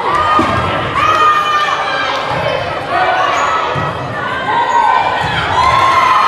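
Young girls shouting and cheering in a gymnasium, several high voices overlapping in drawn-out calls.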